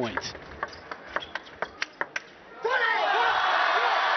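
Table tennis rally: about eight sharp ball clicks off the rackets and table, coming faster toward the end, then a short lull. A loud crowd cheer with applause breaks out about three-quarters of the way in as the point is won.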